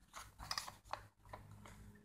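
A few faint clicks and taps of a hollow plastic toy boat's hull and deck being handled and fitted together, spread over the first second and a half, with quieter ticks after.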